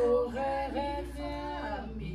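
Voices singing a church hymn tune in solfège syllables: a few held notes stepping in pitch, the last one sliding down near the end.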